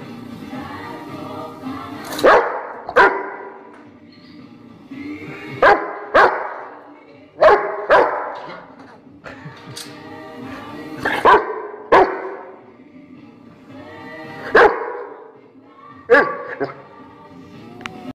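A Rottweiler barking, about a dozen single barks spread through the stretch, many coming in pairs about half a second apart, over music playing underneath.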